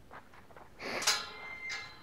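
Steel pipe corral gate being moved: a metallic scrape and clank about a second in, leaving the pipe ringing briefly with a thin bell-like tone.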